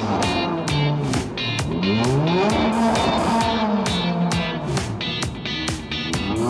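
Background music with a steady beat laid over a McLaren-Mercedes Formula 1 car's V8 engine, which revs up and down as the car spins doughnuts with its rear tyres spinning and smoking.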